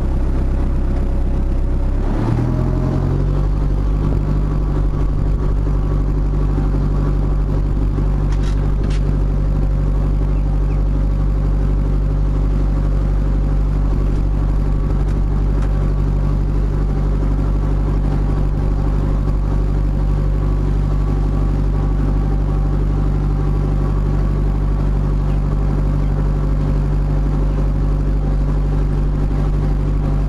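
Narrowboat's diesel engine running under way. About two seconds in its revs rise to a higher steady speed, which it then holds.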